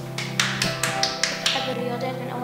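A person clapping, a string of quick claps about five a second that stops about one and a half seconds in, over background music.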